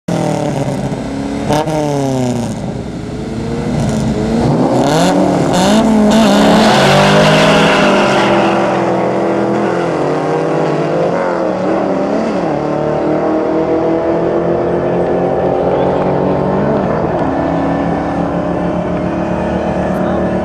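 A V8 and a four-cylinder drag car revving at the start line, then launching and accelerating hard down the strip under full throttle. The engine pitch climbs and drops back several times as they shift up through the gears.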